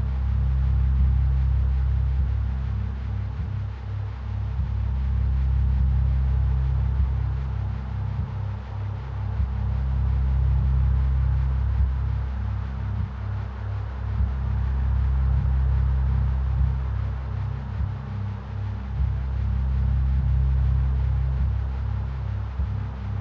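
Ambient meditation music: deep, steady bass drone tones that swell and ease about every five seconds, with a regular pulsing in the low hum and sparse, soft percussion, carrying a steady 4 Hz theta-wave binaural beat.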